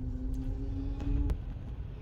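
Road rumble inside a moving car's cabin. A steady low hum lasts just over a second and ends in a sharp click.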